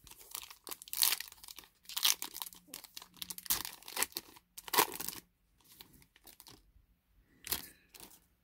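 Foil trading-card pack wrapper being torn open and crinkled by hand, in a series of separate bursts of tearing and crinkling.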